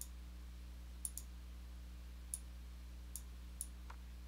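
Computer mouse clicking: about six short, sharp clicks, two of them close together about a second in, over a faint steady low hum.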